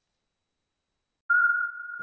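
Silence, then about a second in a loud, steady, high electronic beep starts abruptly and holds: a pure sine tone opening the outro logo sting.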